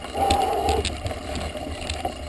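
Mountain bike climbing a dry dirt and gravel track, with scattered short clicks from the tyres and bike and a steady low wind rumble on the microphone. A brief louder hum comes just after the start and lasts about half a second.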